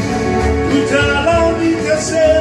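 A man singing into a handheld microphone over a recorded backing track with a steady beat.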